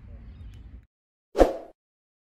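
A single short pop sound effect, the loudest thing here, from an animated subscribe end screen. Before it, low outdoor field rumble cuts off abruptly just under a second in, leaving silence.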